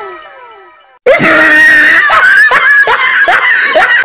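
Falling whistle-like tones slide down and fade out over the first second. After a brief gap, a loud, shrill human scream comes in quick pulses, several a second, until the end.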